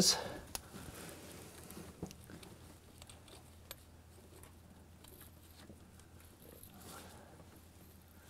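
Faint scraping and a few light clicks of a steel prechamber reamer being pushed and turned by hand in a diesel glow-plug bore. The reamer will not go in: a sign of carbon buildup at the prechamber entrance, probably very hard carbon.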